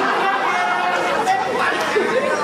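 Several people talking loudly over one another in a jumble of overlapping voices, with no single voice standing out.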